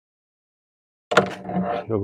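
Silence for about the first second, then a man's voice starts abruptly with a sharp onset and carries on to the end.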